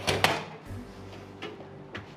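Metal baking sheet pushed onto an oven rack, a sudden metallic clatter about a quarter second in, then quieter knocks as the oven door is shut.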